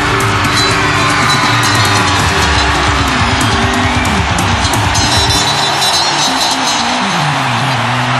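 Live rock band playing, with electric guitar over a held backing, the bass stepping down in pitch about seven seconds in.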